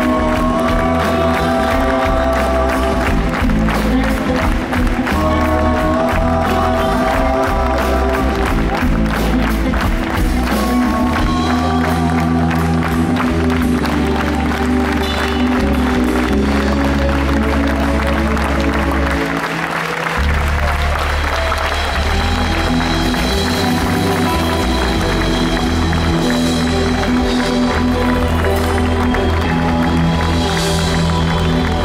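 Live rock band playing an instrumental passage: electric bass, keyboards, electric guitar and drum kit, with audience applause. The bass drops out briefly about twenty seconds in.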